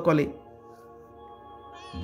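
A spoken word ends just after the start, then soft background music of sustained, steady held tones fills the pause until the voice returns at the very end.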